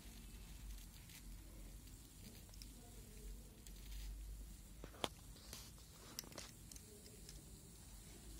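Faint clicks and light scraping of a smartphone's frame and parts being handled and worked apart by hand, with one sharper click about five seconds in and a couple of smaller ones after it.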